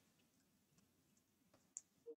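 Near silence: room tone with a few faint, short clicks, the clearest one a little before the end.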